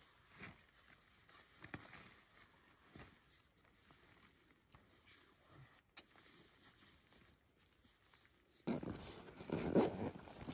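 Clothing and sleeping-bag fabric rustling as someone pulls on warm layers in a small shelter, soft and scattered at first, then much louder and continuous near the end.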